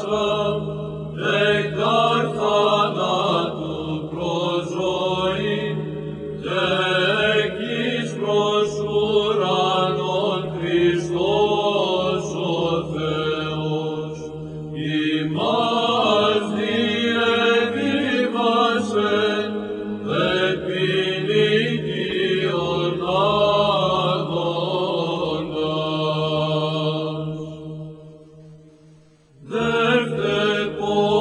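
Greek Orthodox church chant: a hymn melody sung over a steady held drone. It fades out near the end, and a new chant starts right at the close.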